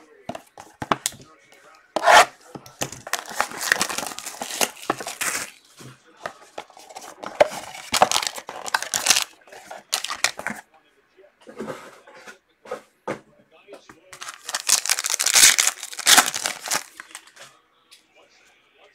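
Trading-card pack wrappers being torn open and crinkled by hand, in three main bursts of tearing and rustling with small clicks and handling noises between.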